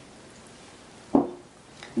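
A small bowl set down on a cutting board with a single dull thud about a second in, followed by a faint click near the end.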